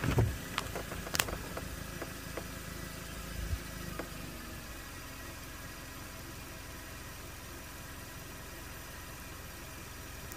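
Car engine idling with a steady low hum, heard from inside the cabin, with a few light clicks in the first few seconds.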